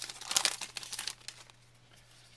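Baseball card pack wrapper crinkling and rustling in the hands as it is pulled open and crumpled, dying away about halfway through.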